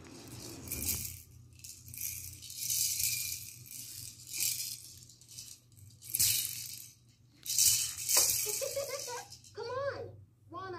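A plastic baby rattle shaken in a run of short rattling bursts, loudest a little past the middle. Near the end a voice with rising and falling pitch comes in.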